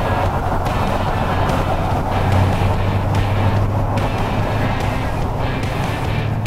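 Background music over a car engine running steadily on the move: the 1969 Alfa Romeo GTV 1750's four-cylinder twin-cam engine with dual Weber side-draft carburettors.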